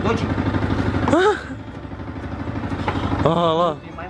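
Yamaha sport motorcycle engine running, louder for the first second or so and then dropping back to a steady idle.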